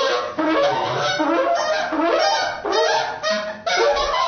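Trumpet played in free improvisation: a run of short notes that bend up and down in pitch, with brief breaks between phrases.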